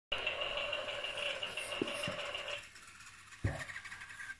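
A small electric RC toy motor whines steadily and stops about two and a half seconds in. A knock follows about a second later, then a higher-pitched motor whine starts near the end.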